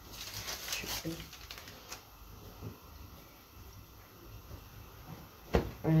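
Rustling of a green bag being handled, loudest in the first second, then quieter handling noises with a click about two seconds in.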